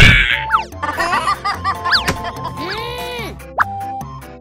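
Cartoon sound effects over playful background music: a loud hit right at the start, then a string of sliding whistle-like glides rising and falling in pitch.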